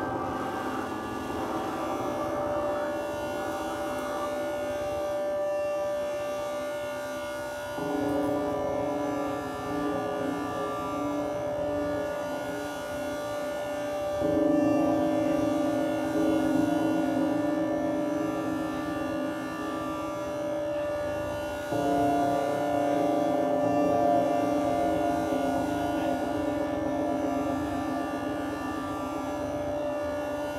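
Live drone music: layered sustained tones held steady, stepping to a new chord about eight seconds in, again near the middle, and again about two-thirds of the way through, each change a little louder.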